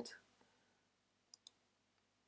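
Near silence, broken by two faint computer mouse clicks in quick succession about a second and a half in.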